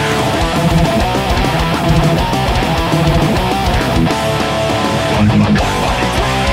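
Distorted electric guitar playing a fast metal riff on a Framus Hollywood Custom through BIAS FX amp modelling, over the song's backing track.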